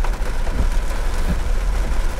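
Steady rain falling on a pickup truck's roof and glass, heard inside the cab, over the low rumble of the truck running.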